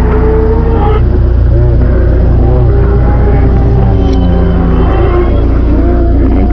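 Dark industrial electronic music: a heavy, steady low bass drone under layered held synth tones and wavering, swooping pitched sounds, loud and unbroken.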